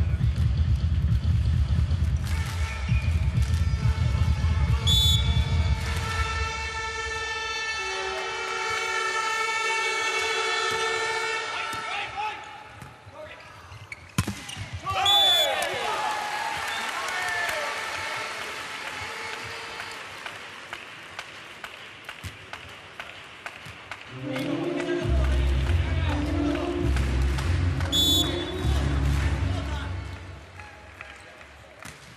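Volleyball arena crowd noise with public-address music and low rhythmic thumping, cut by three short, high referee whistle blasts: about five seconds in, halfway through, and near the end.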